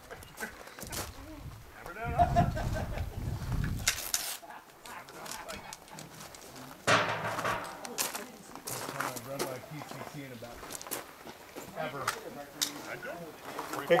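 Indistinct talking among people at a shooting range, with a low rumble about two seconds in and a few sharp knocks scattered through.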